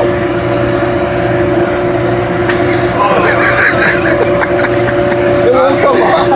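Steady mechanical hum of shop machinery holding two even tones, with voices talking over it about three seconds in and again near the end.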